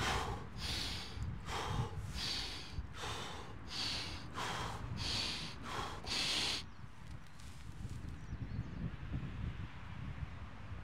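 A man's quick, forceful breaths, more than one a second, as he braces over a heavy sandbag before lifting it; the breathing stops about six and a half seconds in.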